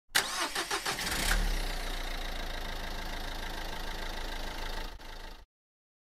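A car engine cranking for about a second, catching, then idling steadily until it cuts off suddenly, most likely a sound effect for the Lego car.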